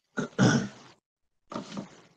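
A person's voice making two short, loud non-word vocal noises, the first and louder near the start, the second about a second later.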